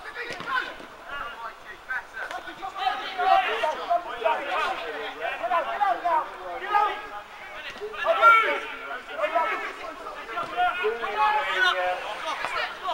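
Indistinct voices of players and spectators at an outdoor football match, talking and calling out, with louder shouts about three and eight seconds in; no words come through clearly.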